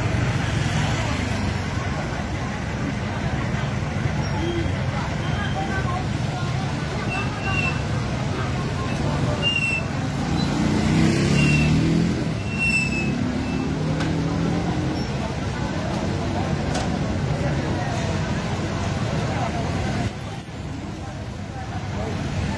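Street traffic noise, with vehicles running and voices mixed in.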